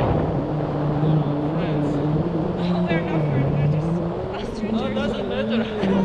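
Strong wind rushing over an action camera's microphone in tandem paraglider flight, with a steady low drone running through it.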